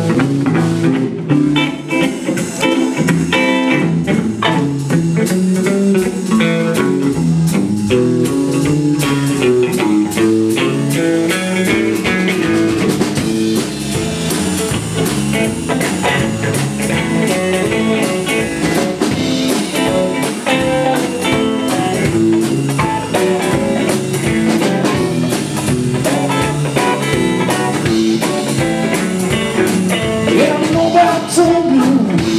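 Live band playing an instrumental blues groove: electric guitar over a moving bass line and a drum kit.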